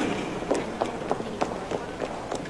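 Footsteps on a hard floor: sharp, irregular heel clicks, several a second, from more than one person walking, over a faint background hum.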